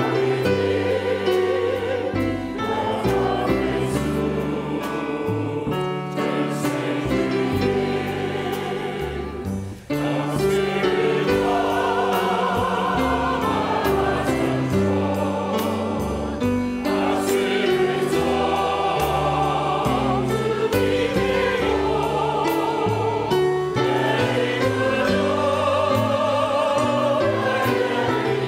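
A choir sings a hymn with piano accompaniment, in sustained notes with vibrato. There is a brief break in the sound about ten seconds in.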